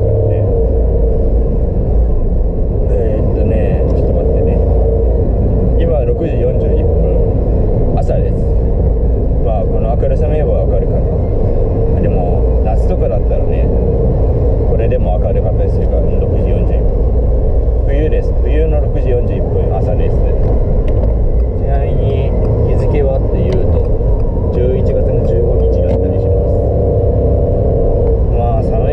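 Steady low rumble of a car's engine and tyres heard from inside the cabin while driving, with a man's voice talking over it on and off.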